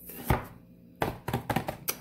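Hands knocking and tapping on a plastic formula tub: one sharp knock about a third of a second in, then a quick run of taps and clicks in the second half.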